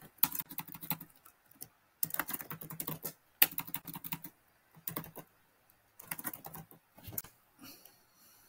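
Typing on a computer keyboard: several short runs of quick keystrokes with brief pauses between them.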